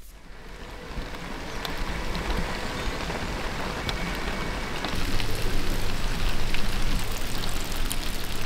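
Heavy rain falling, a steady hiss with scattered drop ticks, fading in at the start and getting louder about five seconds in.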